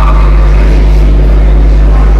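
Soundtrack of a council-chamber video played over a room's sound system: a loud, steady low hum with muffled voices underneath.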